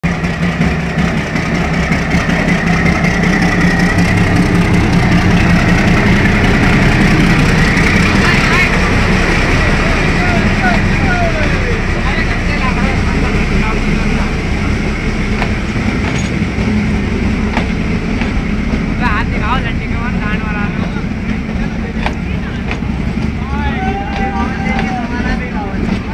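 A diesel locomotive passes close by hauling a passenger train, its engine loudest in the first few seconds, then the steady rumble of the coaches running over the rails. Voices shout from the train, briefly about two-thirds of the way through and again near the end.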